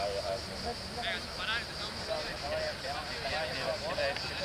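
Indistinct men's voices talking at a low level over a steady high-pitched hiss, with two short high chirps about a second in.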